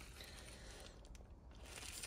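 Near silence, with faint rustling of plastic packaging being handled.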